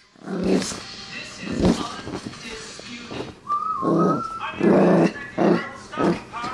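Small Chihuahua-type dog barking in several short, sharp bursts, excited and waiting for its ball to be thrown. A wavering high note comes about halfway through.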